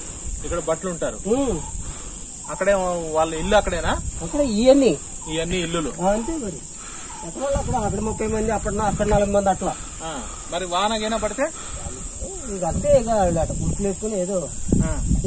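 Steady high-pitched drone of insects, unbroken under men talking.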